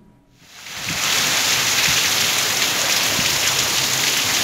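Heavy rain pouring down steadily, fading in over the first second.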